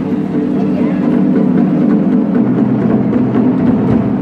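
A troupe of large Chinese barrel drums plays a fast, continuous roll that swells in loudness.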